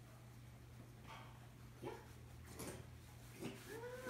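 Chimpanzee vocalizing softly, with a short rising-and-falling whimpering call near the end, over a steady low hum.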